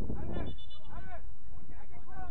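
Players' shouts carrying across a soccer pitch: a short call at the start and another about a second in, each rising and falling in pitch, too far off to make out words. A steady low rumble lies under them.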